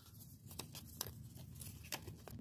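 Faint handling of a small plastic toy purse being opened and a paper puzzle piece being slid into it: a few light clicks and rustles.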